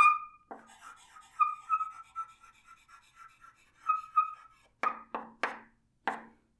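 Chalk writing on a chalkboard: a string of short, squeaky strokes for about four seconds, then three sharp taps of the chalk on the board near the end.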